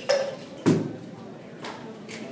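Three sharp knocks, the first two loud and a little over half a second apart, a fainter third about a second later, over a low murmur of voices in a large hall.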